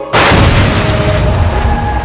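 A sudden deep boom hits just after the start, over sustained ambient soundtrack music, then rumbles away in a long fading wash while the music's held tones carry on.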